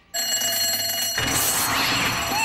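Fire alarm bell starting to ring, set off by the pulled lever of a wall-mounted fire alarm box, a loud steady ring that keeps going. About a second in, a brief loud burst of noise joins it.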